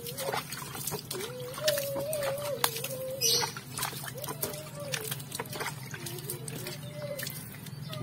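Water trickling and splashing onto the potting soil as freshly replanted cactus pups are watered, with many small sharp splashes and clicks. A thin, wavering whine comes and goes underneath.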